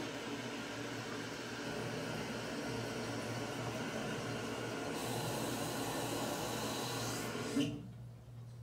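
Steady hum and hiss of running room ventilation. It gets a little brighter and hissier about halfway through, then cuts off suddenly just before the end.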